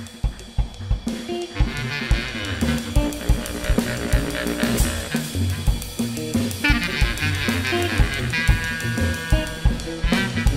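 Live jazz trio playing: a drum kit keeps up a busy pattern of snare, bass drum and cymbals, and from about a second and a half in a clarinet and an electric guitar play melodic lines over it.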